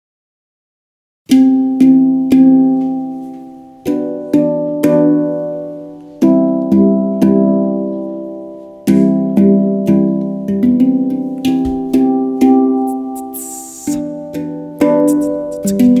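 Handpan, the 'Angel' model, played by hand: single notes struck one after another, each ringing and dying away slowly, in a slow melody that begins about a second in.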